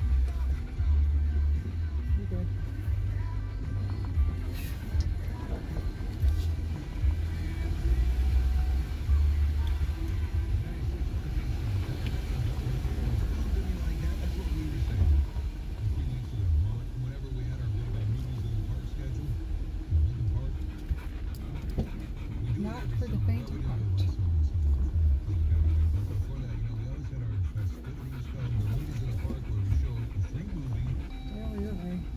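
Jeep Gladiator crawling slowly over loose rock: a low, uneven engine and drivetrain rumble heard inside the cab, with a car radio playing music underneath.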